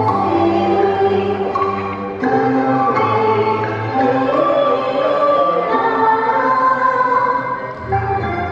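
A woman's voice singing a Cantonese opera song into a microphone through the hall's sound system, over a recorded instrumental accompaniment.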